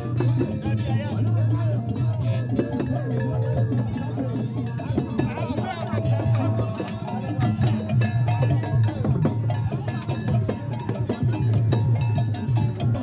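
Traditional procession drumming: drums beaten with sticks, with sharp clacking strokes like a wood block or bell, mixed with voices from the crowd.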